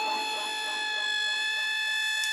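A single sustained electronic tone with a stack of overtones, held at one steady pitch after a short upward glide into it.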